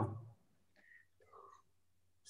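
The end of a spoken word fading out, then near silence on a video call, broken by a brief faint voice-like sound about one and a half seconds in.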